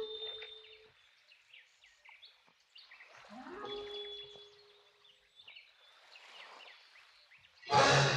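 Orchestral cartoon score. Twice a low instrument slides up into a held note under light, scattered high notes, and the full orchestra comes in loudly just before the end.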